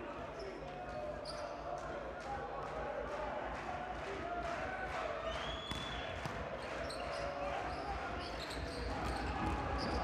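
A volleyball being bounced and struck during a rally, heard as repeated sharp smacks, with a brief high squeak about halfway through, over the constant chatter of spectators in a large, echoing sports hall.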